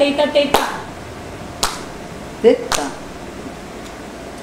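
Single hand claps keeping the tala for a Bharatanatyam Allaripu, three sharp claps about a second apart. The end of a chanted line of rhythm syllables comes at the start, and a short chanted syllable falls between the second and third clap.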